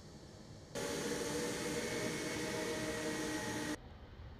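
Jet airliner engines at takeoff power: a steady rush with several held tones. It cuts in sharply about a second in and cuts off sharply just before the end.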